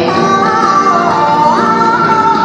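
Accompaniment music for a rhythmic gymnastics routine, played loud in a large hall, with a high melody in long held notes that steps up in pitch about a second and a half in.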